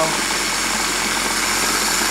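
Old electric hand sander running steadily, shaking a lidded stainless steel pan clamped on top of it, rigged as a homemade parts cleaner.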